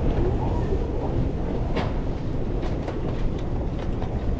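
Steady low rumble of walking through an airport terminal corridor, with a few faint clicks, the clearest about halfway through.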